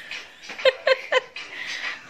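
A small dog yipping three times in quick succession, each yip short and falling sharply in pitch, about a quarter second apart.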